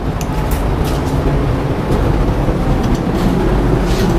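Steady low rumbling room noise in a classroom, with faint scattered ticks.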